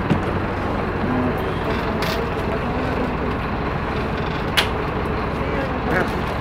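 City bus interior: steady engine and road noise with a low hum, heard from inside the cabin, and two short knocks, one about two seconds in and one near the end.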